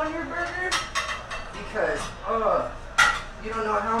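Ceramic plates clinking and clattering as they are handled and loaded into a dish rack at a commercial dish sink. Sharp knocks come through now and then, the loudest about three seconds in.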